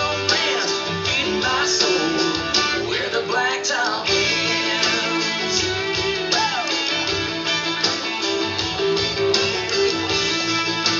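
Country music with strummed guitar over a steady beat, an instrumental stretch between sung lines, with a few sliding lead notes in the first few seconds and again about seven seconds in.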